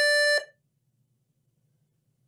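A single short electronic beep, about half a second long: a steady, buzzy tone.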